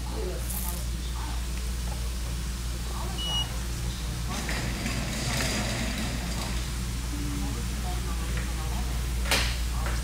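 Steady low hum with a constant hiss, likely room tone, with faint indistinct sounds and a single sharp click near the end.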